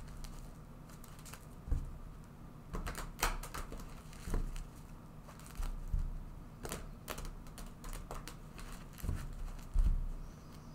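A deck of tarot cards being shuffled and handled by hand: irregular soft clicks and taps, with a louder tap near the end.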